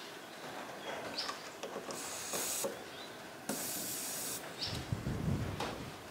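Air hissing in two short bursts, about two and three and a half seconds in, as an inflator chuck with a digital gauge is pressed onto a flat trailer tire's valve stem, with small clicks of the fitting between. A low rumble starts near the end.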